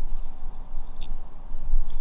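Soil substrate and moss tipped gently out of a small plastic tub into a plastic enclosure: a faint soft patter with a small tick about a second in and a soft tap near the end, over a steady low rumble.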